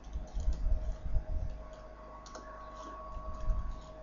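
Typing on a computer keyboard: a run of irregular keystrokes, with a faint steady hum underneath.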